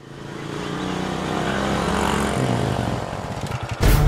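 Small single-cylinder commuter motorcycle engine running at low speed as the bike rolls slowly forward, fading in over the first second and then steady. Music comes in sharply just before the end.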